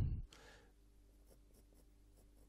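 Faint scratching of a paintbrush stroking acrylic paint onto canvas.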